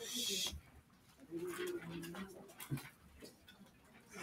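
Paper notebook pages being turned by hand: a short rustle at the start, with a few small paper clicks after it. A faint voice holds one steady pitch for about a second in the middle.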